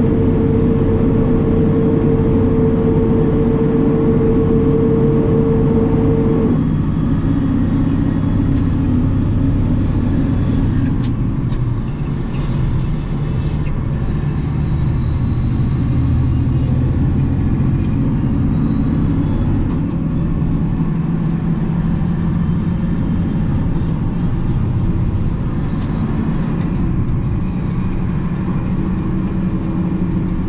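Kenworth T800 dump truck's diesel engine and road noise heard from inside the cab as the truck pulls steadily up an on-ramp and onto the freeway. A steady whine runs for the first six seconds or so, then stops, and the engine note dips briefly about twelve seconds in.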